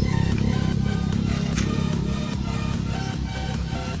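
Background electronic music, laid over the footage, with strong, steady bass.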